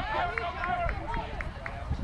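Casual talking voices, with a short, regular ticking about four times a second through the middle.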